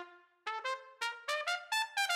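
Background music: a solo brass instrument plays a quick run of short, separate notes that climbs in pitch, after a held note that fades away at the start.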